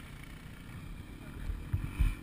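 Low rumble of an off-road motorcycle engine idling, with a few stronger low thumps near the end.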